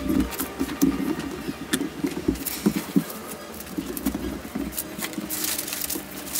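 Thin kite paper crinkling and rustling as hands handle and fold it on a wooden table, in a run of short, irregular rustles.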